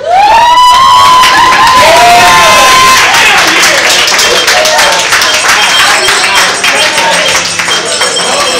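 A man's voice through a microphone rising into one long held high note, sung for about three seconds, then a crowd cheering and clapping.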